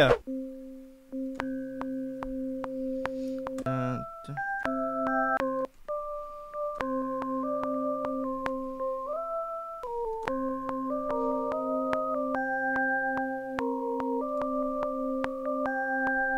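DAW playback of a simple type-beat sketch: held synth chords under a slow, stepping bell-sound melody, with no drums yet. It has two short breaks where playback stops and restarts.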